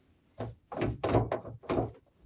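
VW T2 bus gear lever, freshly fitted with a quick shifter kit and new bushes, moved by hand through the gears: a quick series of clunks and knocks as the linkage snaps into each position.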